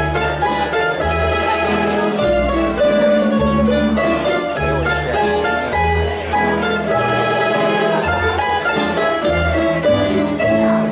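Croatian tamburica ensemble playing folk music from Bačka: small tamburicas pick a quick melody over strummed chords, with a plucked bass tamburica (berde) holding a stepping bass line.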